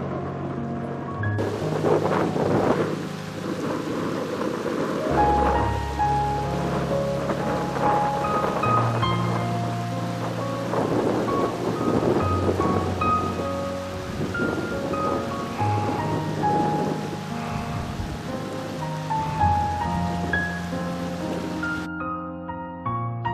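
Slow instrumental music with sustained notes, mixed with a recording of steady rain and repeated rolling thunder. The rain begins suddenly about a second in and cuts off at the end.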